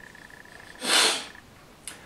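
A man's single short, sharp sniff about a second in, with a faint steady electronic whine behind it that stops partway through.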